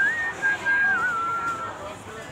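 A person whistling a few sliding notes: a clear single tone that rises, holds, then dips and settles lower about a second in, over faint voices.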